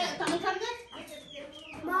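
Domestic hens clucking, with short falling calls in the second half, over people talking.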